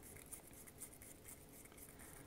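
Near silence with faint rubbing and small ticks from fingers handling a metal e-cigarette atomiser.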